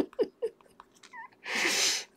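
A woman's laughter trailing off in quick pulses, a faint short squeak about a second in, then a sharp intake of breath near the end.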